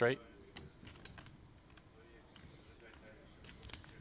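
Low room tone with a handful of scattered light clicks, several in the first second and a couple more near the end.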